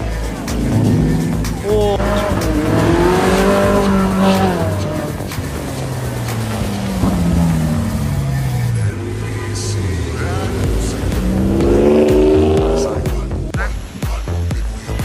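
High-performance car engines revving hard and pulling away, their pitch climbing and dropping with each rev and gear change, several times over.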